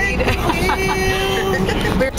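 Steady road noise inside a moving car, with a woman's voice drawing out one long, steady sung note for about a second in the middle.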